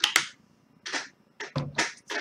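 A man drinking water: a few short swallowing and breathing sounds, the first the loudest.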